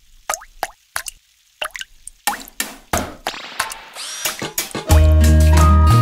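Cartoon plop sound effects of mud blobs landing, at first a few spaced a fraction of a second apart, then quicker and more crowded. About five seconds in, loud children's song music starts with a strong bass line.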